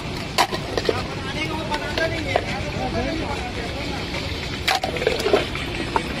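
Busy street ambience: steady traffic noise and background chatter, with a few sharp clicks.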